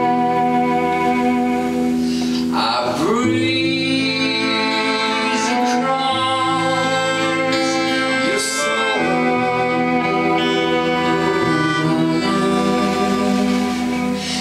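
Live band playing a slow instrumental passage: sustained chords that change about every three seconds.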